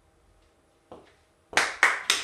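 Two sharp claps about a third of a second apart near the end, after a faint knock about a second in, in a small room.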